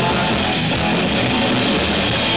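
Live rock band playing, with strummed guitar over bass and drums, loud and steady.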